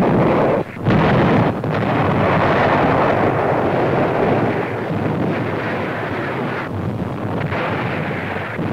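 Explosion of a water tower being demolished, as a dubbed newsreel sound effect. Two sudden blasts in the first second, then a long, even rumble of the blast that slowly fades.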